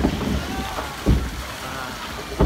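Log flume boat moving along its water channel: water noise and wind on the phone microphone, with a low thump about a second in.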